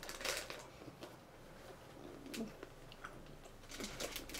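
Someone chewing chocolate-covered peanuts with the mouth near the microphone: quiet, irregular crunching crackles, loudest in the first half-second. A faint 'mm' comes about midway.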